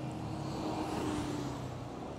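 Maxi-scooter riding slowly in city traffic, heard from the handlebars: a steady low engine hum mixed with wind and road noise, with a faint steady tone that fades out about a second and a half in.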